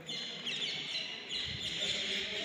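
Birds chirping, high and shrill, short falling calls repeating about twice a second, over faint voices of people.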